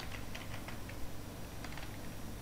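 Computer keyboard being typed on: a quick run of key clicks, a pause of about a second, then a few more keystrokes, over a low steady hum.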